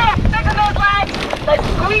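Several voices shouting over each other, with steady wind buffeting the microphone and rushing water from a moving rowing boat underneath.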